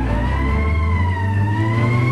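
Ambulance siren wailing, its pitch rising, falling and rising again slowly, over a low rumble.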